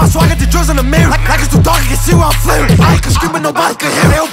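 Hip-hop track with rapped vocals over a heavy sustained bass line. About three seconds in, the bass drops out and leaves the voice nearly bare.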